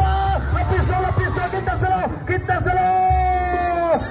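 Oaxacan brass band (banda) music playing with a heavy low beat. Near the end a long held note drops away sharply.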